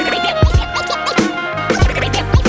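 Instrumental boom-bap hip hop beat with turntable scratching: regular kick-drum hits about every 0.6 to 0.7 seconds, with short rising and falling scratch glides between them and a bass line coming in under the beat near the end.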